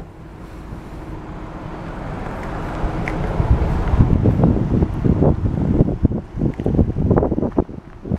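Wind buffeting the microphone outdoors, a rushing noise that builds over the first few seconds and then turns into irregular low gusts and thumps.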